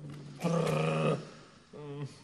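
A drawn-out growl or groan from a voice, held at a steady low pitch for under a second. It starts about half a second in and is the loudest sound, with shorter wavering vocal sounds just before it and near the end.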